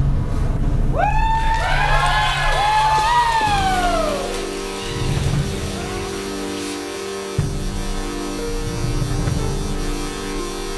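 Live rock band music: a lead instrument plays several swooping pitch slides that bend up and fall away, then gives way about three and a half seconds in to a steady held chord with a low rumble underneath.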